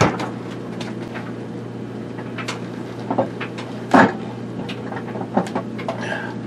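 Items knocking and clattering as a mini fridge is rummaged through: a scatter of short knocks, the loudest about four seconds in, over a steady low hum.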